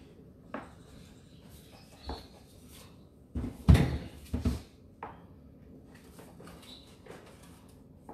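A few knocks and clatters of objects being handled in a room. The loudest is a quick run of several knocks about three and a half to four and a half seconds in.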